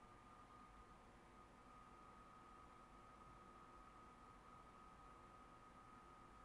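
Near silence: faint steady hiss of room tone with a faint, steady high-pitched whine.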